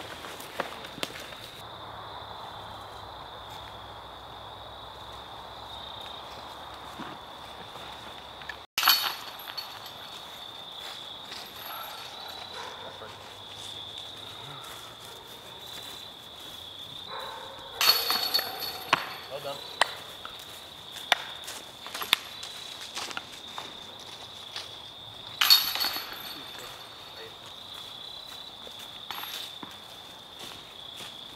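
Woodland ambience with insects trilling steadily on one high pitch, broken by a few short, sharp clatters, the loudest about two thirds of the way in and again a little later.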